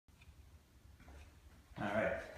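Faint low room rumble, then near the end a man's short voiced sound, louder than the rest, just before he starts talking.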